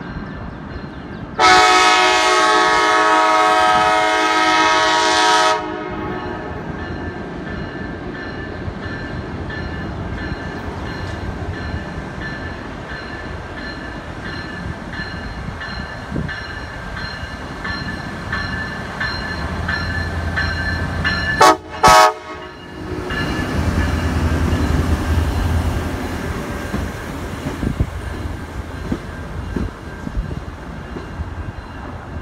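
Siemens Charger diesel locomotive sounding one long horn blast, a chord of several tones lasting about four seconds, as the train approaches. The train's rumble then builds, with two brief loud bursts a little past twenty seconds in. The locomotive's engine and wheels pass close by, followed by double-deck passenger cars rolling past.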